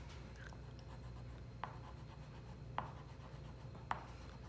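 Faint scratching of a chalk pastel rubbed back and forth on paper as small shapes are filled in, with three light ticks spread through it.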